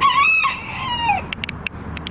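A rooster crowing once: a call of a little over a second that falls in pitch at the end.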